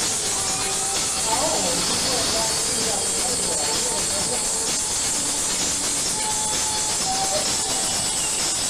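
Steady, heavy hiss, with faint music and voices beneath it.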